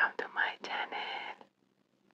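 Whispered speech for about a second and a half, then near silence.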